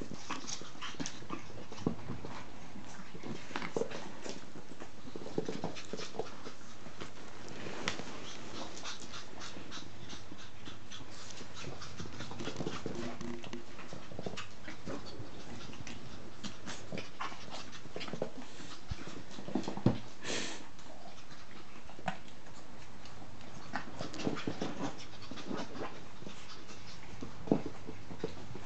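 Shih Tzu puppies, about six weeks old, playing with their mother: small dog noises among scattered light clicks and rustles, with one sharper, louder sound about two-thirds of the way through.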